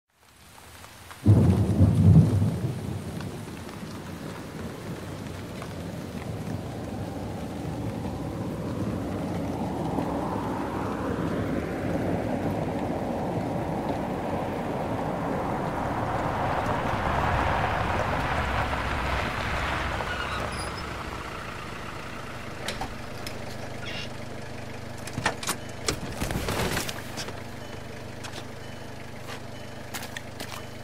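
Thunderstorm sound effects: a loud thunderclap about a second in, then rain that builds up and eases off again, with a few sharp knocks near the end.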